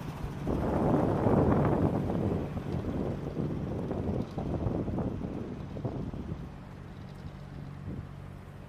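AH-64 Apache helicopter taxiing with its rotor turning: a steady low drone under a rush of wind noise that is loudest in the first couple of seconds and then eases.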